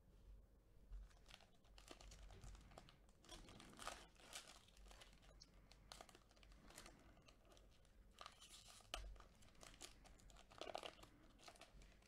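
Faint crinkling and tearing of a Panini Playbook football card pack's wrapper as gloved hands rip it open and pull out the cards, in scattered small crackles.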